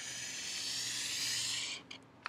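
Marker pen drawn down a sheet of paper in one long steady stroke, a high scratching noise lasting nearly two seconds, ending with a faint tick.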